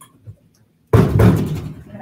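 The head of a tilt-head stand mixer is lowered onto its base, making a single heavy clunk about a second in that rings out briefly.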